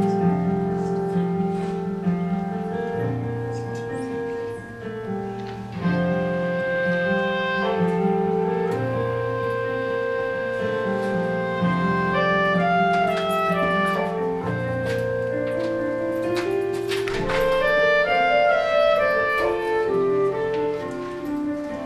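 Solo clarinet playing a melody of long held notes over piano accompaniment, with quicker rising runs in the second half.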